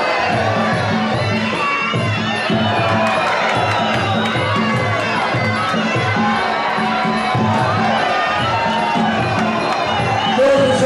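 Fight crowd shouting and cheering, many voices calling out at once, over rhythmic music with a steady low beat.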